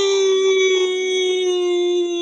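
A man's voice holding one long, loud note, its pitch sinking slightly as it is held.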